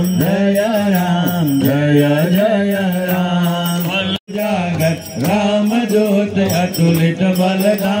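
A group of men singing a Hindu devotional chant together, kept in time by hand clapping and a light jingling beat. The sound drops out briefly about four seconds in.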